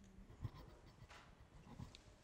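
Near silence: faint rustling and a few soft knocks and clicks from a clip-on microphone being handled as it is passed along.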